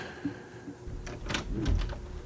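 A door being opened, with a few sharp clicks about a second in.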